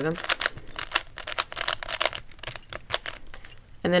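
A 3x3 Rubik's cube being turned quickly by hand through its edge-swapping algorithm: a rapid, irregular run of sharp plastic clicks and clacks as the layers snap round.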